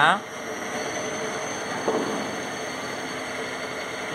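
Electric drive motor and its gearbox running steadily, a continuous hum with a faint high whine. There is one short click about two seconds in.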